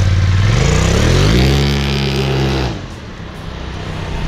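Polaris RZR XP Turbo side-by-side's turbocharged twin-cylinder engine accelerating away, rising in pitch over about a second and holding high. The sound drops off suddenly near three seconds in as the machine pulls away down the street.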